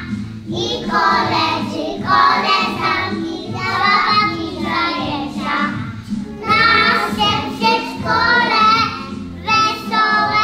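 A group of young preschool children singing a song together, in phrases of a few seconds with short pauses between them.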